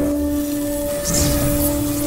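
Intro music: a steady held synth tone with its octave, under a loud noisy rumble and hiss like an explosion effect that swells again about a second in.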